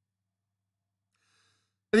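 Near silence, with a faint intake of breath before a man's voice resumes speaking right at the end.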